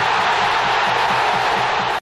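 Large football crowd in a stadium cheering, a dense steady wall of voices with chanting faintly underneath; it cuts off suddenly at the end.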